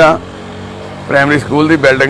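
A man talking in Punjabi. In a pause of about a second near the start, a steady low hum of a vehicle engine running shows through.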